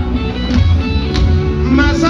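Loud live band music over a concert sound system, with a strong, steady bass.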